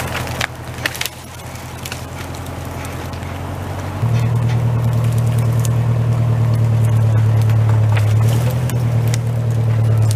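Tractor engine running steadily under load while dragging a chained log through snow and brush, with a few sharp cracks of wood in the first second. The engine is louder and closer from about four seconds in.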